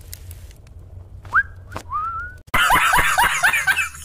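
Two short rising whistled notes, the second gliding up and held a little longer, followed about halfway through by a man's loud laughter in quick repeated bursts that starts abruptly and runs on.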